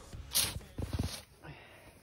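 A snow shovel scraping once against packed snow about a third of a second in, followed by a few soft knocks.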